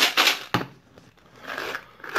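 Jelly beans rattling inside a plastic Bean Boozled dispenser canister as it is shaken, ending in a sharp plastic click about half a second in; near the end, plastic scraping as the canister's top is twisted.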